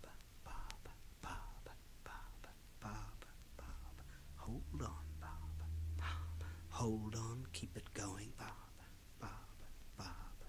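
A man whispering in a quiet, rhythmic pattern of short breathy bursts, with no clear words. A low steady hum swells underneath through the middle, and a brief voiced sound comes about seven seconds in.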